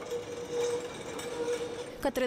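A 1970s-era tram rolling round a tight curve on street track: a steady rumble with a held tone from the wheels that fades about halfway through.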